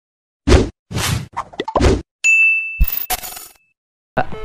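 Logo-intro sound effects: four short, sharp noisy hits in the first two seconds, then a high ding that rings for about a second with two more hits under it, fading out before the end.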